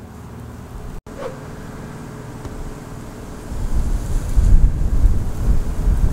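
Wind buffeting the microphone: low, gusty rumbling that swells loud about three and a half seconds in. A brief dropout comes about a second in.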